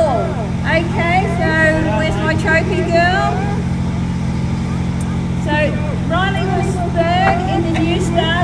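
Speedway race car engine idling steadily, with a woman's voice speaking into a microphone over it.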